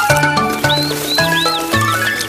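Light instrumental cartoon music with separate bass notes, and three quick, high, arched chirps in the middle: a cartoon bird's tweets.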